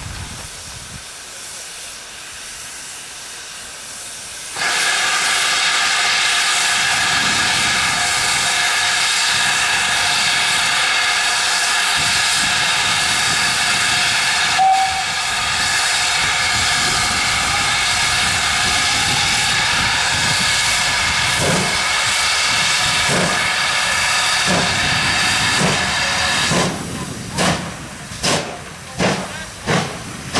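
GWR Manor class 4-6-0 steam locomotive 7822 venting steam in a loud, steady hiss that starts suddenly a few seconds in and runs for about twenty seconds. Near the end the hiss drops and the engine starts away with slow, regular exhaust beats.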